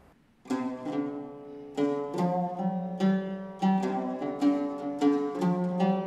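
Solo oud played with a plectrum: a slow melody of single plucked notes that begins about half a second in, after a brief hush.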